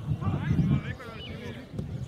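Distant shouting voices of players on a grass football pitch, over a low rumbling noise that is loudest in the first second.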